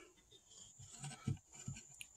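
Faint handling noise of a plastic SAE solar connector and its cable: a few soft knocks and rustles about a second in, over a faint steady high-pitched tone.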